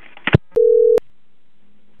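Telephone line tone: one steady low beep lasting about half a second, starting and stopping with sharp clicks, just after a short crackle on the line as the prank call ends.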